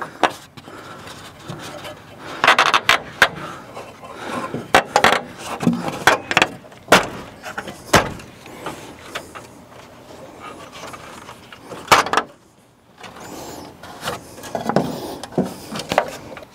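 Plastic grille of a 2011 Chevy Silverado being pushed and worked onto its mounting tabs: scattered knocks and clicks of plastic on plastic as the tabs snap into place.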